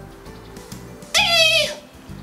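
A woman's voice giving one short, high, wavering squeak of a sung note about a second in, a mock-nervous attempt at singing, over a quiet background music bed.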